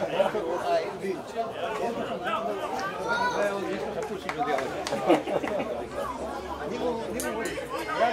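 Several voices of players and spectators at an amateur football match talking and calling out over one another, with one sharp knock about five seconds in.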